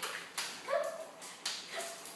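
A dog barking in a few short, sharp barks.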